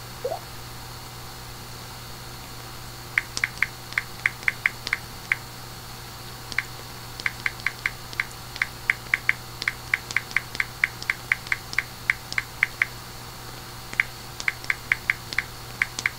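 Keyboard typing: runs of light, sharp keystroke clicks, several a second, in bursts with short pauses, over a low steady hum.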